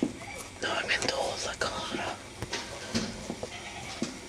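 A person whispering close by, the words unclear.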